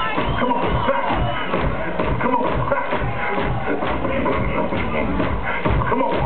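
Live beatboxing through a club PA: a steady vocal drum beat with a pitched line sung over it.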